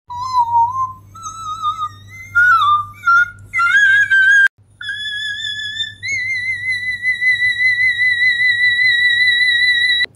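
A woman singing high whistle-register notes without words: short notes climbing in steps, a brief break about four and a half seconds in, then one long top note held with vibrato. The singer takes it for polyphonic singing.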